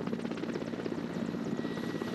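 Mil Mi-8-type transport helicopter hovering low as it comes in to land, its rotor beating in a fast, steady chop with a thin steady whine over it.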